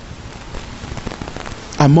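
A faint, irregular crackling patter of many small ticks, then a man's voice starts near the end.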